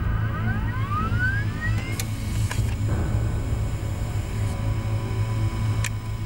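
A printer feeding out a sheet, heard as a rising whine over the first two seconds and a few sharp clicks after, over a low steady drone.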